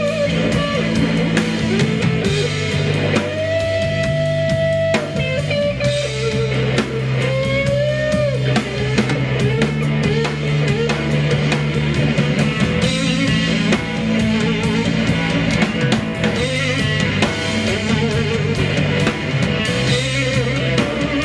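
Live blues-rock trio playing an instrumental passage: electric guitar lead line over electric bass and drum kit, with a long held note a few seconds in and a bent note near the middle.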